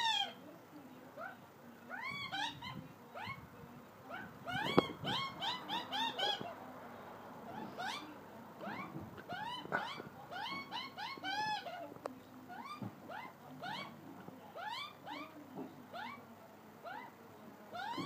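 Australian magpies calling, a long series of short rising-and-falling notes in bursts: the begging calls of a nearly full-grown juvenile being fed by its parent. A single sharp knock about five seconds in.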